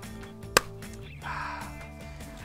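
Light background music, with a rubber dish glove being pulled onto a hand: one sharp snap about half a second in, then a brief rustle a little after a second.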